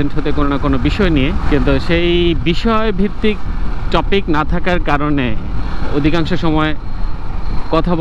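A man talking throughout, over the steady low rumble of a motorcycle being ridden: engine and wind on the helmet-mounted microphone.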